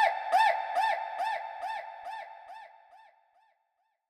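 A short pitched synth sound with a rise-and-fall in pitch, echoed by a delay effect: the repeats come about two and a half times a second and fade away over roughly three and a half seconds.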